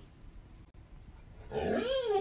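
A dog's drawn-out vocal call, starting about a second and a half in, that rises in pitch and then wavers back down.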